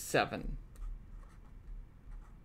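Pen writing a number on paper, faint and light, after a brief vocal sound at the very start.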